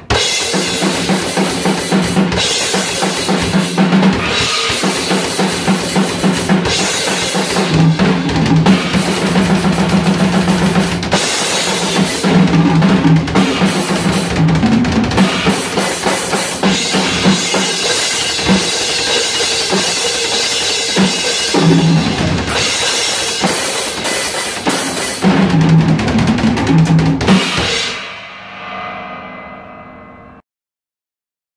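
Acoustic drum kit played solo in a death-metal style: loud, dense, continuous playing on kick drum, snare and cymbals. The playing stops about 27 seconds in, and the cymbals ring out and fade.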